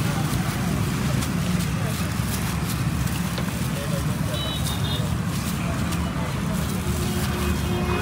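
Steady roadside traffic rumble mixed with indistinct background voices.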